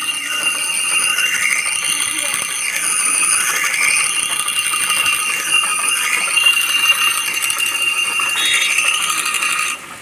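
Steel knife blade being ground on a pedal-driven bicycle grinding stone: a steady, high grinding hiss with a whine that rises and falls in pitch as the blade is worked along the wheel. It stops just before the end.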